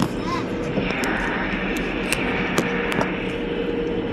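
Steady drone of a moving vehicle with wind rushing past, a gust of hiss swelling about a second in and easing off near three seconds, and a few sharp clicks.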